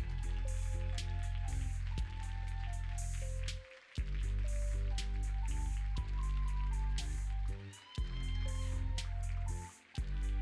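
Background music with a steady beat and heavy bass, which drops out briefly three times.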